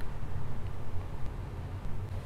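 Low, uneven rumble with a faint hiss behind it; no distinct event stands out.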